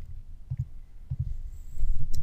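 Computer mouse clicks and desk handling: a few short low thuds with faint clicks.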